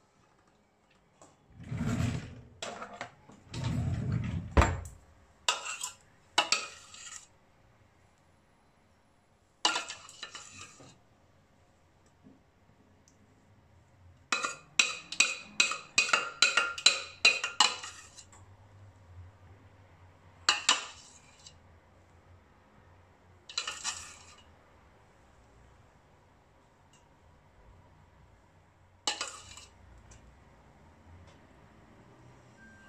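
A metal spoon clinking and scraping against a stainless steel pot while béchamel sauce is scraped out of it. The clatter comes in scattered bursts, with a quick run of about a dozen clinks in the middle.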